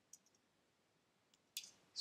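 Near silence broken by a few faint computer-mouse clicks, the first just after the start and another about a second and a half in, then a short breath near the end.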